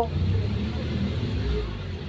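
Low, steady rumble of nearby road traffic, swelling slightly near the end, with faint voices in the background.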